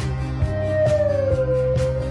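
Band music: a long held note slides slowly down in pitch over a steady bass line and a regular beat of about two strikes a second.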